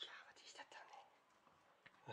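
Faint whispering: a short breathy stretch in the first second, then near quiet.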